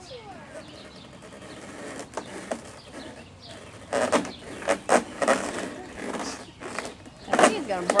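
Short bursts of a person's voice about four seconds in and again near the end, over faint birds chirping.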